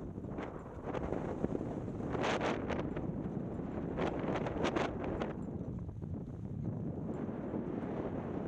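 Wind buffeting the microphone while skiing downhill, with short scrapes of ski edges on packed snow: a cluster about two seconds in and another from about four to five seconds.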